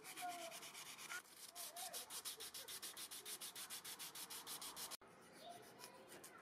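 Fine P600 sandpaper rubbed back and forth by hand on an iron knife blank, in quick, even strokes of about eight a second. After a break about five seconds in, it goes on as softer, less regular rubbing. The whole is faint.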